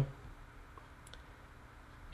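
Quiet room tone with faint computer mouse clicks about a second in.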